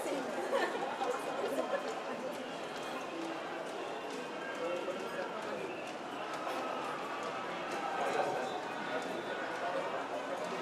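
Crowd of many people talking and calling out at once, a steady jumble of overlapping voices with no single speaker standing out.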